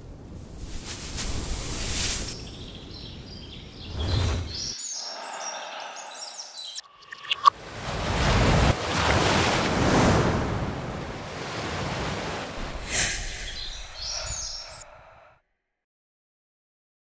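Outdoor nature ambience: a rushing noise at first, then bird calls chirping about five seconds in, then sea waves breaking and splashing over rocks from about seven seconds in, with more bird calls near the end before the sound cuts off suddenly.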